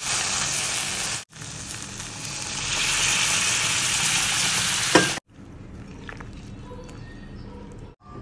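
Fish and vegetables sizzling in a hot stainless steel kadai while a spatula stirs them, then water poured into the hot pan sets off a louder, steady hiss. After a cut, a quieter steady sizzle of the curry simmering.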